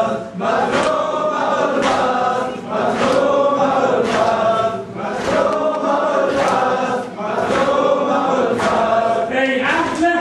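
Crowd of men chanting a mourning lament (noha) in unison, in repeating phrases of about two to three seconds, over a steady beat of sharp strikes, typical of rhythmic chest-beating (matam).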